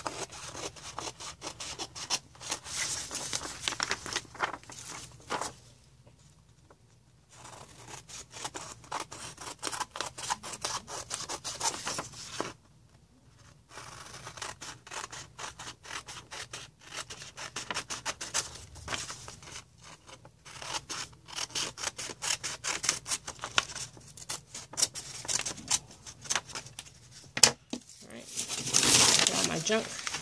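Scissors snipping around the edge of a paper sheet with a napkin fused onto it by cling wrap: rapid runs of short cuts, broken by two brief pauses. Near the end, a louder crinkling rustle of plastic wrap and paper offcut being handled.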